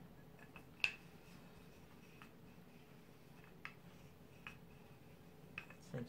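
Quiet room with a handful of faint, sharp clicks and taps, the clearest about a second in: a wooden rolling pin being handled and set down on a wooden table while scone dough is patted into shape.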